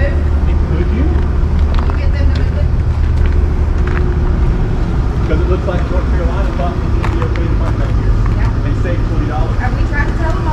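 A vehicle engine idling, a steady low rumble, with faint voices in the background.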